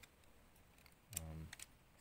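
A few faint, light clicks of plastic LEGO Bionicle pieces being handled and pressed together, about a second in.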